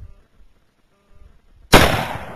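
A single shot from a Thompson/Center .243 rifle with open sights, a sharp crack near the end after near silence, with a tail that fades over about a second.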